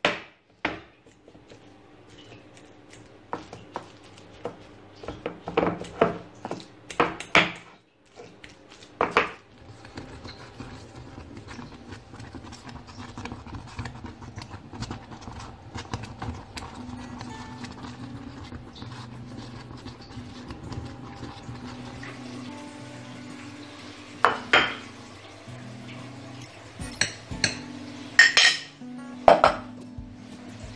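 Metal fork clinking and scraping on a ceramic plate as bananas are mashed, with several sharp knocks in the first few seconds. Later, utensils knock and scrape against a glass dish of porridge, with more clinks near the end over a steady low hum.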